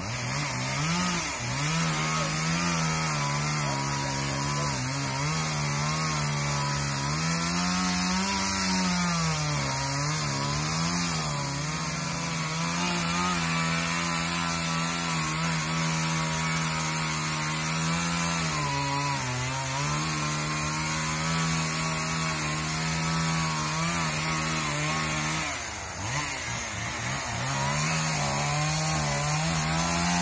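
Chainsaw running at high revs throughout, its engine note sagging and recovering in pitch several times as it works. Near the end the revs drop briefly, then it picks up to full speed again.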